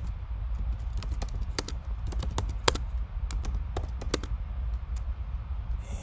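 Typing on a computer keyboard: a run of irregular, quick key clicks as a terminal command is typed, over a low steady hum.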